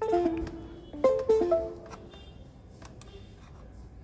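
Short electronic notification chime with a plucked, guitar-like tone, in two quick groups of notes about a second apart. It sounds as a USB cable is connected to the phone and is typical of a device-connection alert.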